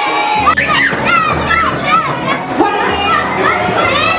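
A group of young children shouting and calling out excitedly together, over background music with a steady low bass.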